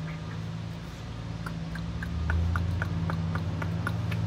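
Truck engine idling, a steady low hum that swells about two seconds in, with a light rapid ticking of about four ticks a second starting about one and a half seconds in.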